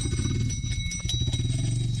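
Motorcycle engine idling with an even low pulse, with a few faint ticks near the middle.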